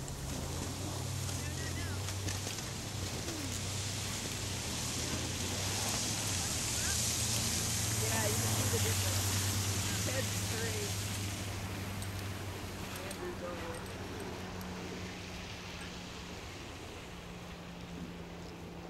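A car on the road, its engine and tyre noise growing louder to a peak about eight or nine seconds in and then fading as it passes.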